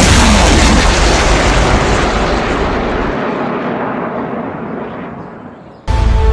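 A single pistol shot: one sudden loud bang whose long echoing tail fades slowly over nearly six seconds. Background music comes back in near the end.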